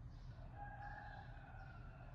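Steady low hum with one faint, drawn-out call that starts about half a second in, slides slightly down in pitch and fades after about a second.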